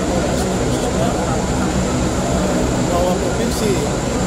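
A steady low engine rumble, with a person's speech faintly over it.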